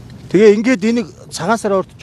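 Speech only: a man talking in two short phrases.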